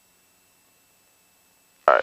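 Near silence on the recorded audio feed, with only a faint steady high-pitched tone, until a voice starts near the end.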